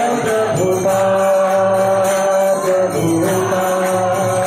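A single voice chanting a devotional mantra in a slow, sung style, holding long steady notes and sliding between them.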